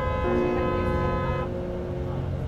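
A vehicle horn sounding one steady held blast that cuts off about one and a half seconds in, over the constant low rumble of the vehicle's engine and road noise.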